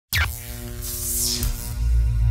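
Electronic intro sting with a deep bass pulse, starting abruptly and carrying a high swoosh sweep about a second in.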